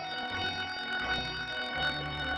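Instrumental background music: held notes over a low bass line that moves in steps.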